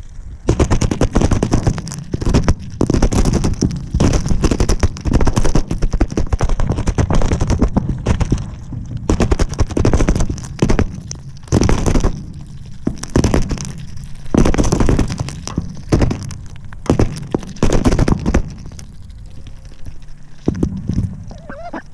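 Ducks' bills pecking and dabbling at feed pellets in a plastic bowl right at the microphone, knocking against the bowl and camera: loud, rapid clattering in bursts with short pauses between.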